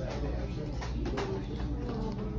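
A small child's soft cooing voice over a steady low hum.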